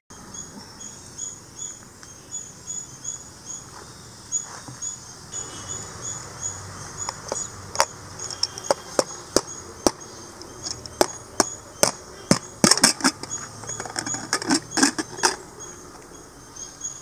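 A series of sharp metallic clicks and knocks, sparse at first and then coming thick and fast in the last few seconds, as an aluminium pressure cooker's lid is handled. Behind it, a high chirping call repeats a few times a second.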